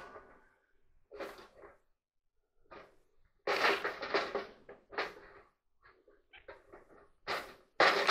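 Wooden hand-screw clamp being handled and adjusted, its screw handles turned to open the jaws: a few short bursts of clatter and wood-on-wood knocking, the longest about halfway through.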